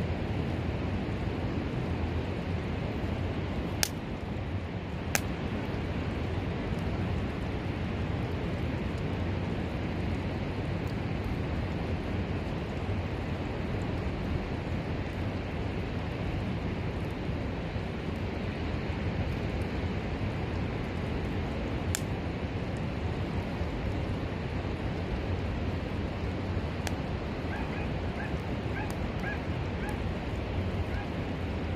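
Steady wash of wind and surf, heaviest in the low end, with a few sharp clicks scattered through and faint short chirps near the end.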